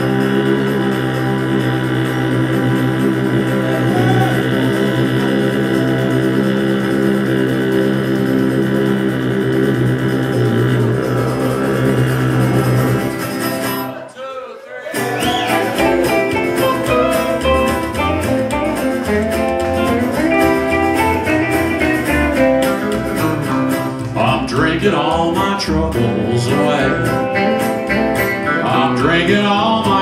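Live country band instrumental break: strummed acoustic guitar, electric guitar and upright bass playing together. The sound drops out briefly about halfway, then comes back with busier picked guitar lines.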